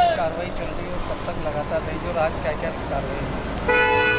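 Outdoor background din: a steady rumble with indistinct voices talking. Near the end a steady pitched tone starts.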